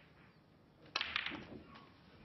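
Snooker balls striking: one sharp click about a second in, then a quick cluster of smaller clicks as the cue ball breaks into the pack of reds.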